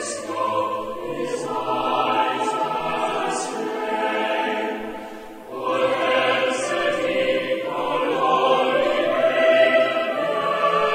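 Choral music: a choir singing sustained phrases, dipping briefly about halfway through before the next phrase begins.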